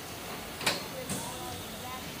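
Indian Railways sleeper coaches rolling slowly past, with a single sharp clack about a third of the way in, over a steady background of noise and distant voices.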